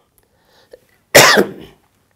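A man coughs once, sharply, about a second in.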